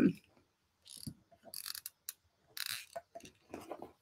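Hands handling craft materials on a work table: a few short rustles about a second apart, followed by small clicks.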